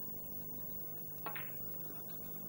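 A single sharp click of a snooker shot about a second in, the cue tip striking the cue ball, over a low steady hiss.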